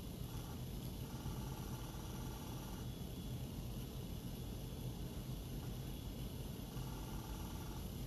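Medit i500 intraoral scanner's capture sound running steadily, like an old movie projector running. It signals that the scanner is capturing the data and stitching it properly.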